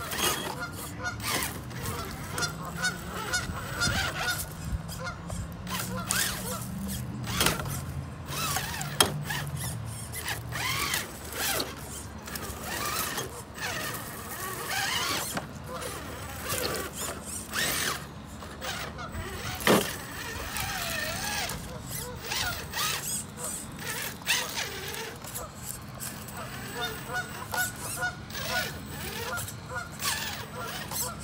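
Traxxas TRX-4 radio-controlled rock crawler's electric motor and geared drivetrain whining at crawling speed as it climbs over boulders, with many clicks and knocks of tyres and chassis on the rocks.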